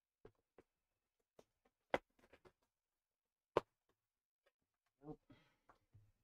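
Scattered knocks and clicks from foam packing blocks being handled, with two sharper knocks about two and three and a half seconds in and a short rustle near the end.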